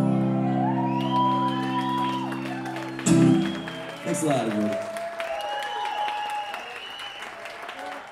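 Electric guitar's final chord ringing out, struck once more about three seconds in and then dying away, as the audience whoops and applauds at the end of a song. After the guitar fades, the cheering whoops and clapping carry on on their own.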